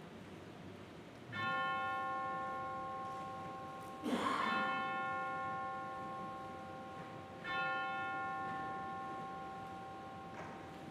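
A bell struck three times, about three seconds apart, each stroke left to ring out and slowly fade; the second stroke comes with a brief noisy burst.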